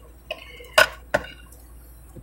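Tarot card decks handled and set down on a marble tabletop: three sharp knocks in the first second or so, the middle one loudest.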